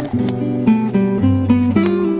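Acoustic guitar background music, notes plucked in quick succession over lower bass notes.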